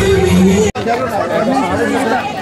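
A song with singing cuts off abruptly less than a second in. It gives way to voices chattering in a crowd.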